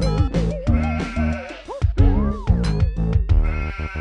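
Electronic music: a pulsing bass line under a warbling synth lead with arching up-and-down pitch swoops, briefly stuttering near the end.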